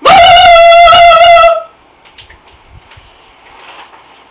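A loud, high-pitched wavering shriek, about a second and a half long, distorting the microphone.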